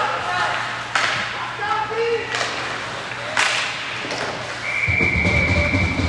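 Ice hockey play: sharp knocks of sticks and puck three times, with voices around the rink, then a referee's whistle blowing one steady high note near the end, stopping play after a shot on goal.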